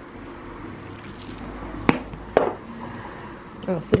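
Two sharp clicks about half a second apart as a plastic sesame-seed shaker is handled at the table, over a low steady hum. A voice begins near the end.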